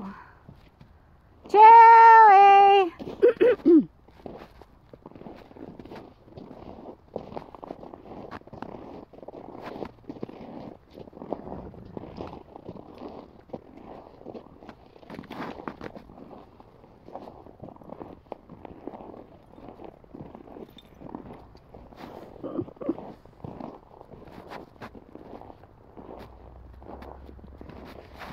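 Footsteps crunching through snow at a steady walking pace, roughly two steps a second. Near the start comes a loud, high, drawn-out call of about a second and a half, followed by a few shorter ones.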